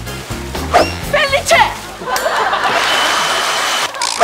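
Voices over background music, then about two seconds in a steady rushing hiss of spraying water from a water cannon, lasting nearly two seconds and cutting off sharply.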